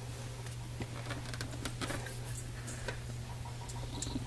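Faint, scattered ticks and taps of a clear plastic soap stamp being pressed and held down on a soft castile soap bar, over a steady low hum.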